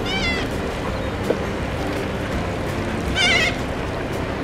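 Two short, wavering bird calls, one at the very start and one about three seconds in, over a steady wash of background noise with faint music underneath.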